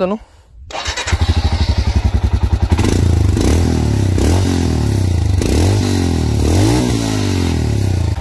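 Royal Enfield Himalayan's 411 cc single-cylinder engine heard at the exhaust. It comes in about a second in with a steady pulsing beat, then is revved up and let fall back several times.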